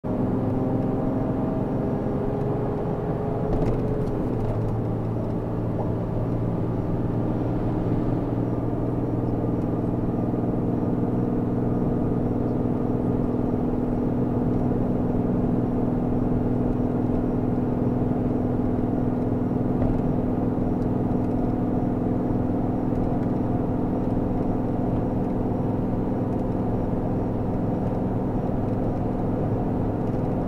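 A vehicle's engine and tyre-on-road noise heard from inside the cabin while it accelerates up a highway on-ramp and climbs. It is a steady drone whose engine note shifts about four seconds in and then holds.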